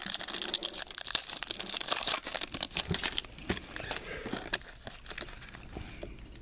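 Foil trading-card pack torn open and its wrapper crinkled: a dense crackle of small clicks, thickest in the first three seconds and thinning toward the end.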